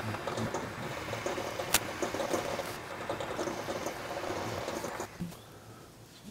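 Metal lathe cutting, a Rockwell 10-inch, with a tool plunged straight in to hog material off a small metal part, its sound sped up eight times into a fast, dense rattle. There is one sharp click a little under two seconds in, and the noise fades away in the last second.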